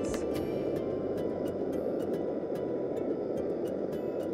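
MSR Dragonfly liquid-fuel camp stove burning with a steady rushing noise, its flame turned down to a simmer, with scattered small clicks throughout.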